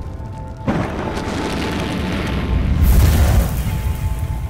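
Intro sound effect: a sudden deep boom about a second in, swelling into a rushing, rumbling noise that peaks near the end and then fades, over background music.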